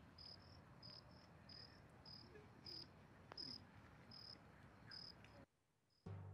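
Faint cricket chirping: short high chirps about three every two seconds, cutting off suddenly near the end.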